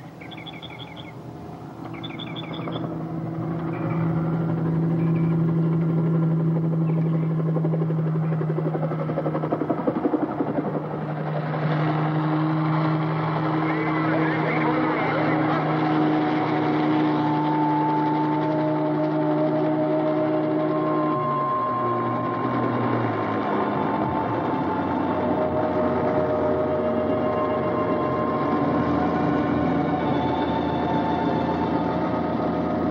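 A helicopter's engine and rotor noise as it flies over and comes in to land, under long, low held notes of a film score that change pitch in steps. Birds chirp briefly at the start.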